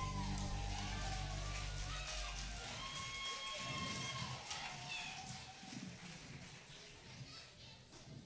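A live rock band's final chord rings out and dies away over the first two or three seconds. Audience cheering and shouting runs over it, then thins to scattered voices that fade.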